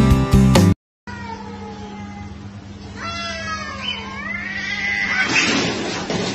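A cat meowing, with drawn-out calls that rise and fall in pitch about halfway through, over a steady hum. A louder, noisier stretch follows near the end. Before that, background music plays for under a second and then cuts off.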